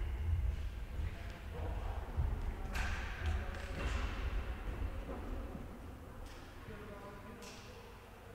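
Indistinct voices echoing in a large sports hall, with irregular low thuds during the first five seconds or so, after which it grows quieter.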